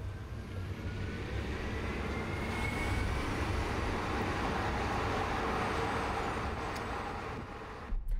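Hyundai IONIQ 5 electric car driving on asphalt, mostly tyre and road noise that swells and then eases off, with a faint whine rising in pitch over the first few seconds.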